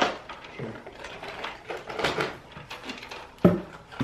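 Light knocks and rattles of a metal wire basket being handled, several short irregular taps, the loudest near the end.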